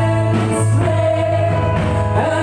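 Live worship music: women's voices singing a praise song together in harmony, with keyboard accompaniment and a steady low note held underneath.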